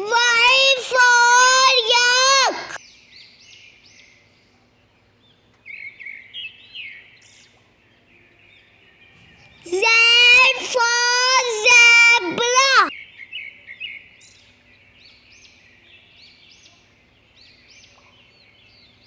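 A high-pitched voice calls out two short alphabet phrases, one at the start and one about ten seconds in. Faint birds chirp in the background between and after them.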